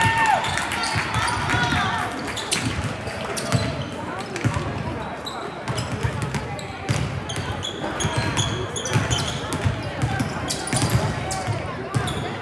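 Several basketballs bouncing irregularly on a gym floor during warm-up shooting, with short high squeaks and the chatter of spectators echoing in a large gym.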